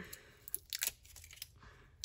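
Soft crackles and small sharp clicks of a roll of foil washi tape being handled and peeled, bunched together in the first second with a few more later.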